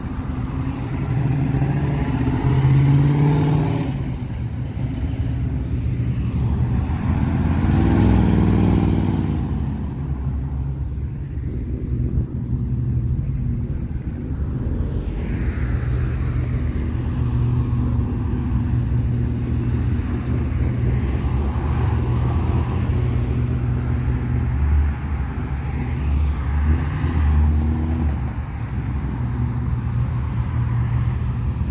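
Several cars driving past one after another, with a low engine rumble throughout. Engines swell loudest about three and eight seconds in as a classic muscle car and other cars pull away and accelerate.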